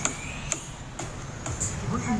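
Short high-pitched ticks repeating evenly about twice a second over a low street background.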